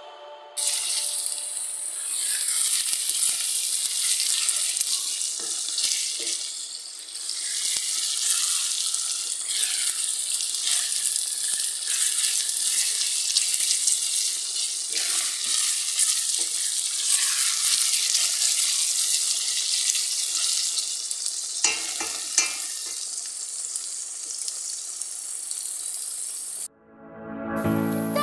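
Chopped chili and garlic frying in oil in a stainless steel pot, a steady sizzle with fine crackling, stirred with a wooden spoon. Two sharp knocks come a little before the end.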